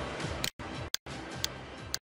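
Background music from a streamed IPTV channel, cutting out abruptly twice, about half a second and a second in, with a sharp click at each break, then stopping at the end.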